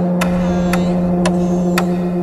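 Trailer sound design: a steady low electronic drone with a sharp tick about twice a second.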